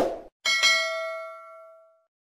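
Subscribe-button notification sound effect: a short click at the start, then a single bright bell-like ding about half a second in that rings on and fades out over about a second and a half.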